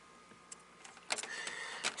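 Small clicks of multimeter test probes being handled and lifted off a sensor's pins, with a faint short hiss in the second half.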